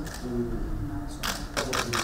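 Camera shutters clicking in quick succession, about four clicks over the second half, over faint voices in the room.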